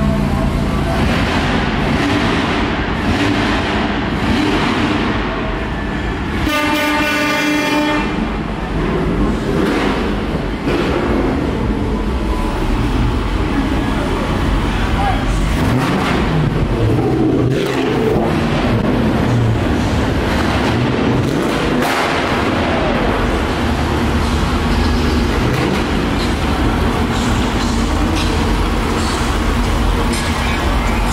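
A steady din of car engines and crowd chatter as show cars drive slowly past. About six and a half seconds in, a loud air horn sounds once for about a second and a half.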